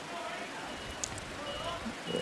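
Faint ballpark ambience: a steady hiss with faint distant voices, and one small sharp pop about a second in as the pitch smacks into the catcher's mitt.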